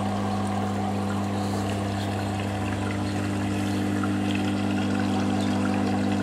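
Steady low hum with a few even overtones over water flowing and trickling through the tank of a transformer oil-water separator.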